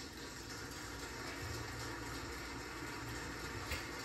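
Quiet, steady sizzle of pancake batter cooking on a hot griddle over gas burners, with bubbles forming in the batter.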